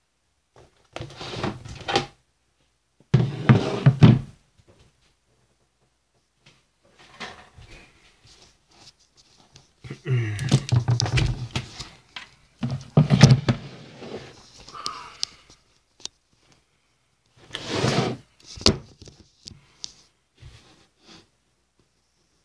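Handling noise from a cardboard dough tube being worked open: five knocking, rustling bursts of about a second each, with a few sharp clicks between them.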